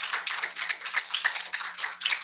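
Applause from a small audience: a dense, irregular patter of hand claps.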